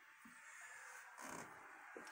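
Near silence: room tone, with a faint brief noise a little past halfway.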